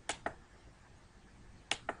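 Computer mouse clicking: two pairs of quick, sharp clicks, about a second and a half apart.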